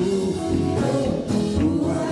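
A man singing a worship song into a microphone over instrumental accompaniment.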